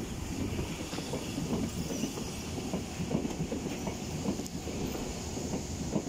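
Yellow Berlin U-Bahn small-profile train running on the tracks just below: a steady rumble of wheels on rail with irregular clicks and knocks.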